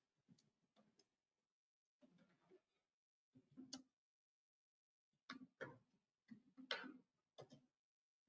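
Faint, irregular clicks and taps in small clusters, the strongest coming in a run over the second half.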